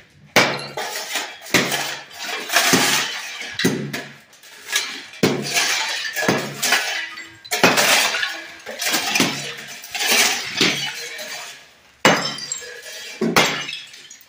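Ceramic floor tiles being broken up and knocked loose with a hammer. About a dozen cracking strikes come roughly once a second, each followed by shards clinking and scraping across the floor.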